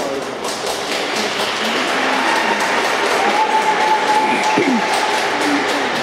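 Applause from a small audience, many irregular claps building about half a second in and carrying on. A few voices and a steady high tone sound underneath.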